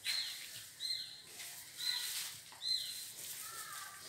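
A bird chirping: four short, high calls, each falling in pitch, coming about once a second.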